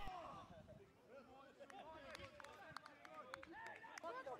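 Near silence on an amateur football pitch, with faint, distant shouts and calls from players and a few light clicks.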